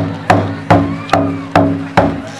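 A drum beaten in a steady single-stroke beat for dancing, about two and a half strikes a second, each stroke ringing low and dying away before the next.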